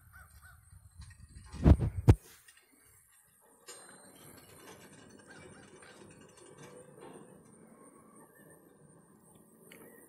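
Two heavy thumps in quick succession, just under two seconds in, then faint low background noise.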